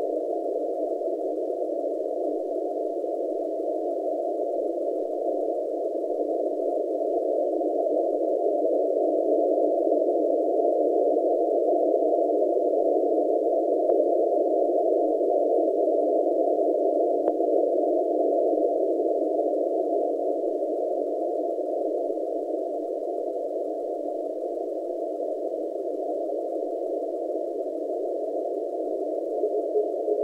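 Icom IC-7200 shortwave receiver hissing with band-limited static through a narrow CW filter on the 20 m NCDXF beacon frequency. The noise slowly swells and fades, and no beacon is heard above it. A faint tone shows right at the end.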